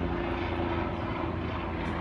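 A steady, low engine drone holding an even pitch.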